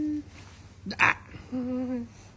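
A person's voice holding a steady hummed 'mmm', a short sharp breath sound about a second in, then a held 'aah' near the end.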